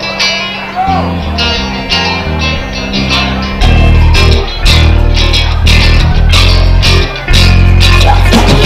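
Live punk-rock band opening a song on a Telecaster-style electric guitar riff. It builds, and the full band with bass and drums comes in loud about three and a half seconds in, with a brief drop just after seven seconds.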